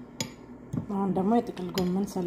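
A sharp clink of a utensil against a ceramic plate, then a voice talking.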